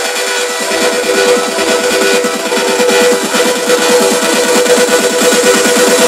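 Electronic dance music played loud over a club PA, in a build-up: a repeated hit comes faster and faster over a held synth tone while the level slowly climbs, leading toward the drop.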